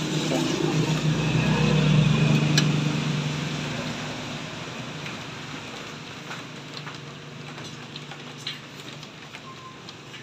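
Low, steady engine hum of a passing motor vehicle, loudest about two seconds in and then slowly fading away, with a few light clicks.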